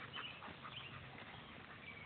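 Faint footfalls and rustling of a young German Shepherd running on grass after a flirt-pole lure.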